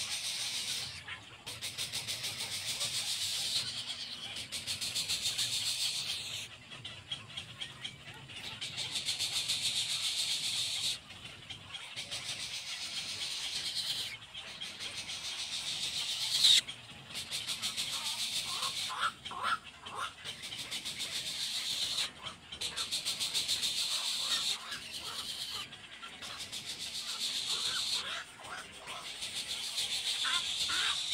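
Egret chicks' begging calls: a rapid, high-pitched ticking chatter that comes in repeated bouts of one to three seconds with short pauses between them.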